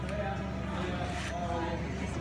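Faint, distant chatter from a few people echoing in a large indoor hall, over a steady low hum.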